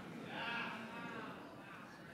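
Faint scattered voices of a church congregation reacting, a soft wavering murmur that fades toward the end.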